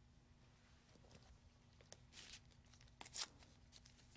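Near silence with a faint steady hum, broken by two faint, brief rustles of handling about two and three seconds in.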